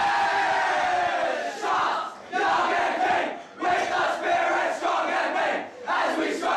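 A junior Australian rules football team singing their club song together, loudly and more shouted than sung, in phrases with short breaths between them.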